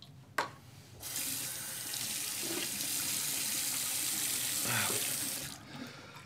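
Water running from a tap into a sink, turned on about a second in and shut off abruptly near the end, with a sharp click just before it starts.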